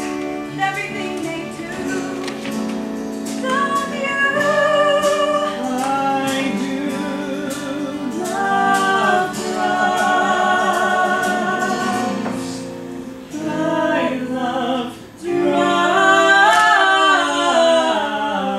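Musical-theatre number sung live on stage: a singer holding long notes with vibrato over band accompaniment, with a steady ticking beat through the first half. The music dips briefly about three quarters of the way in, then comes back louder.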